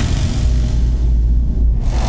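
Cinematic intro sound design: a deep, steady low rumble, with a whoosh sweeping in near the end.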